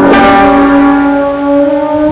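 Brass band of trumpets, trombone and tuba playing a slow sacred march. A loud held chord comes in with a crash at the start and moves to a new chord right at the end.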